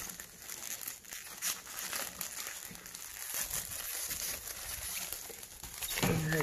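Clear plastic wrapping and a foil meal pouch crinkling as hands handle them and pull them apart, with many small irregular crackles.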